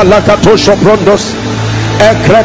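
A man praying aloud in tongues, a fast, even run of short repeated syllables, which breaks off to a low steady hum near the end.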